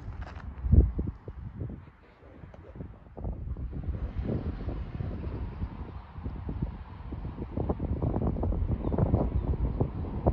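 Wind buffeting a phone's microphone in uneven low rumbling gusts that grow stronger in the second half, with one sharp thump about a second in.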